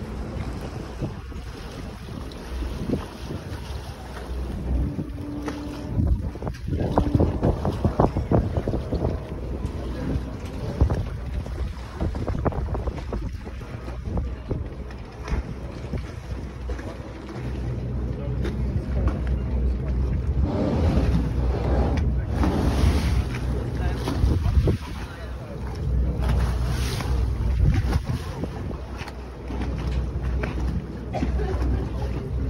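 Wind buffeting the microphone on a moving boat, over the boat's steady low engine drone and water rushing past the hull. The wind gusts come and go, loudest in the second half.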